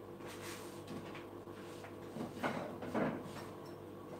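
Faint off-camera handling sounds: light knocks and scraping of objects being moved, with a couple of louder bumps about two and a half and three seconds in, over a steady low electrical hum.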